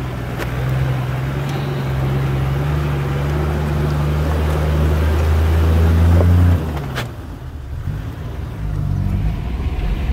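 Four-wheel-drive vehicle's engine pulling steadily under load as it crawls over big rocks in low range, its note rising slightly, then easing off about six and a half seconds in. A single sharp knock comes about seven seconds in.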